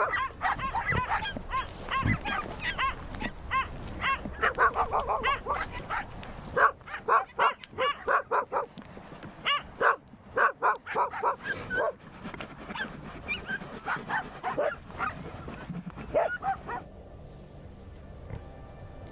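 A dog barking and yipping over and over in quick runs of short calls, until it stops near the end.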